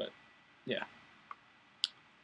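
Mouth noises around a single softly spoken word: a lip smack at the start and a sharp high click near the end, with a faint steady high whine beneath.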